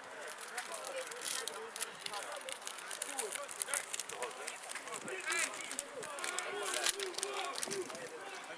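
Indistinct shouts and chatter of rugby players at a scrum and spectators on the touchline, with scattered short clicks.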